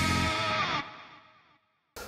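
Short musical bumper led by distorted electric guitar, ending on a held chord with one note sliding down, then fading out to silence about a second and a half in.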